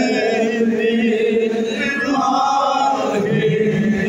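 A man chanting a devotional salaam unaccompanied into a headset microphone, in long held notes with a wavering, ornamented melody that drops lower near the end.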